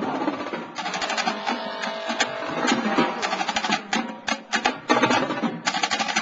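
Marching drumline playing a cadence on the march, led by a line of high-tension marching snare drums: a dense stream of crisp, rapid stick strokes with tenor drums behind.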